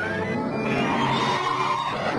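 Music with a squealing, gliding sound effect over it, the pitch rising just as it begins.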